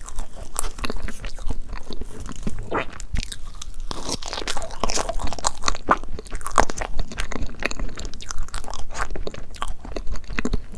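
Close-miked eating sounds of soft, cream-layered crepe cake being chewed: a dense, irregular run of mouth clicks and smacks. A wooden fork is pressed through the cake's layers against a wooden board at the start.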